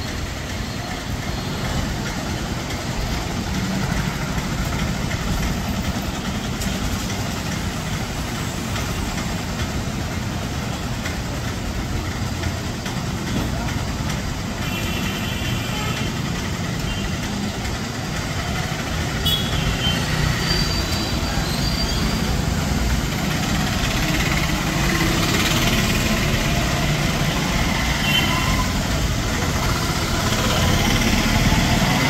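Street traffic: cars, auto-rickshaws and motorbikes passing, a steady mix of engine and tyre noise, with a few short higher tones around the middle.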